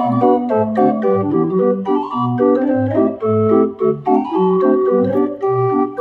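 A small 36-key Dutch street organ (draaiorgel) playing a Christmas medley: a melody carried over held chords, with a bass line of separate notes underneath.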